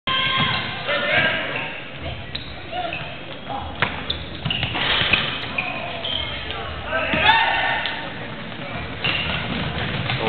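Basketball game sounds in a gym: the ball bouncing on the hardwood court and knocks of play, over the voices of spectators and players.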